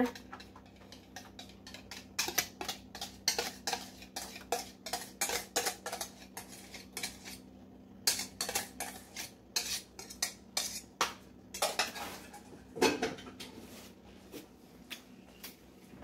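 A metal utensil clicking and scraping against a stainless steel mixing bowl in quick, irregular taps as thick pudding is scraped out of it, with a faint low steady hum underneath.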